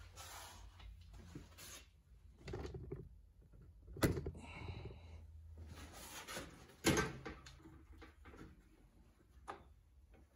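Workbench handling sounds as a bar clamp is worked to press a clamped drill down: scattered knocks and clicks, with two sharp knocks about 4 and 7 seconds in, over a low steady hum.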